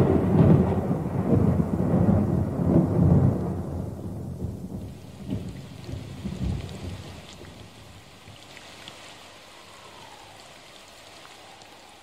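Thunder rolling over rain, loud at first and dying away after about four seconds, with a couple of smaller rumbles a second or two later. Steady faint rain is left behind it. It is a storm sound effect for the coming of the Flood.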